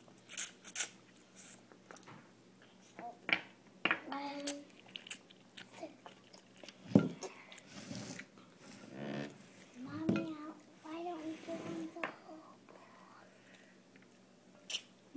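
A toddler eating spaghetti with his fingers: chewing and slurping noodles, with scattered small wet clicks and smacks. A voice murmurs briefly a few times in between.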